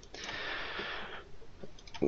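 A soft hiss for about the first second, then a couple of faint clicks near the end from a computer mouse starting the slide show.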